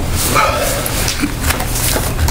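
A few people laughing briefly in short chuckles.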